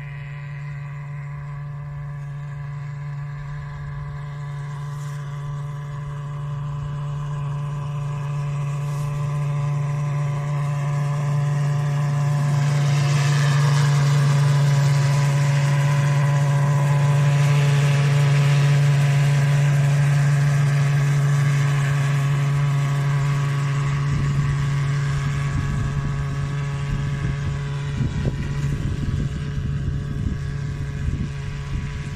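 Joyance JT10L-606QC agricultural sprayer-fogger drone flying a fogging pass, its steady droning hum growing louder as it comes close about halfway through, then fading as it moves away. Gusts of wind rumble on the microphone in the last few seconds.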